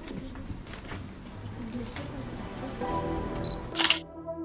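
Street ambience of passers-by talking under background music, ended near the end by one sharp camera shutter click.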